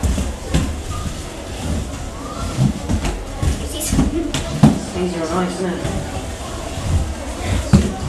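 Roller skate wheels rumbling on a hard hallway floor, with a few sharp knocks as the skates land and push off, under people talking.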